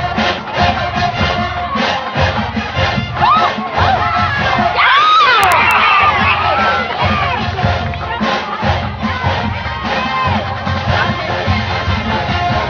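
College marching band playing a drum-driven beat while a stadium crowd cheers and screams, the screaming swelling loudest in the middle, about three to seven seconds in.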